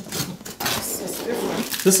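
A cardboard shipping box being cut open with a small knife: the blade scraping and slitting along the packing tape, with the cardboard rasping.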